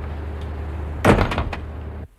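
A panelled wooden front door shutting about a second in: one sharp knock followed by a short rattle of smaller knocks, over a steady low hum.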